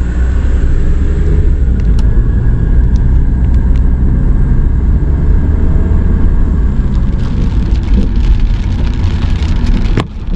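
Car driving on a country road, heard from inside the cabin: a steady engine and road rumble. From about seven seconds in, light raindrops start ticking on the windshield.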